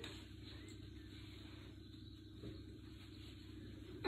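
Near silence: faint steady room hum, with one brief soft sound about halfway through.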